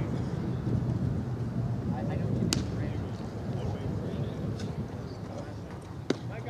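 A low, steady rumble of wind on the microphone at a baseball field, with faint distant voices. About two and a half seconds in there is a single sharp crack.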